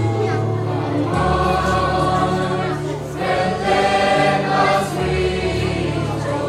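School choir of boys and girls singing a feast-day song together, over a steady low accompaniment whose notes change every couple of seconds.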